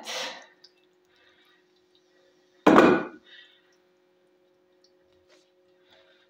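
An enamel colander set down in a sink: one sudden thunk about three seconds in, over a faint steady hum.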